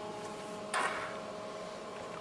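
Steady faint hum of several fixed tones from bench test equipment, with one brief soft hiss a little under a second in.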